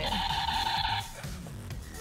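A toy's electronic sound effect: a steady, harsh electronic tone that cuts off suddenly about a second in.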